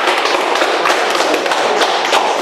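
A small group of people applauding, with dense, steady clapping.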